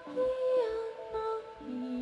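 Live band music: a woman singing long held notes that slide between pitches, over a steady low drum beat about twice a second.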